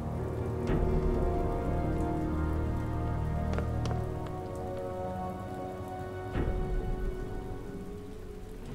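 Rain falling steadily, under a low, held music score with a few sharp clicks.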